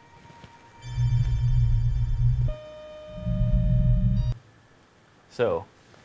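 Electronic soundtrack: two long, deep bass swells, each about one and a half seconds, under steady high held tones, then a quick falling sweep near the end.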